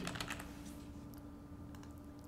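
A few faint keystrokes on a computer keyboard, typing a short word, over a faint steady hum.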